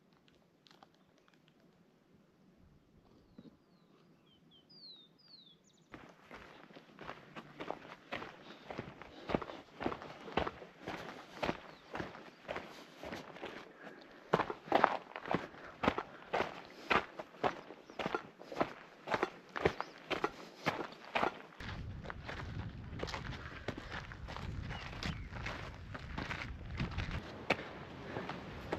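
A few faint bird chirps over near quiet, then footsteps crunching on a dirt and gravel trail at a steady walking pace. About three-quarters of the way through, a low wind rumble on the microphone joins the steps.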